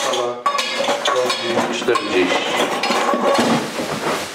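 Empty metal food cans clinking and knocking together in a series of short clinks as they are set out on a tabletop, ready to be filled.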